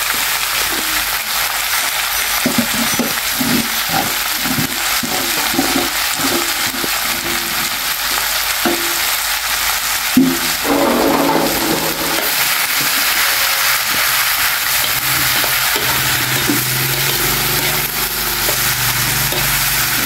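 Food frying in a hot pan with a steady sizzle, and occasional stirring.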